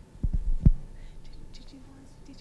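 Handling noise from a handheld microphone being carried and passed into the audience: a few dull low knocks in the first second, the last the loudest, then only faint small ticks.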